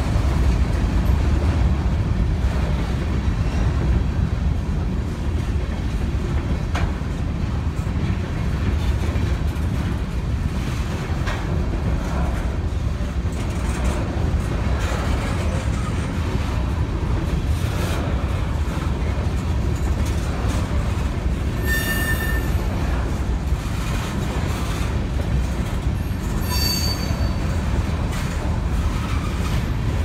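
Freight train's covered hopper cars rolling past: a steady rumble of wheels on rail with scattered clicks over the rail joints. Two brief high metallic squeals come about two-thirds of the way through.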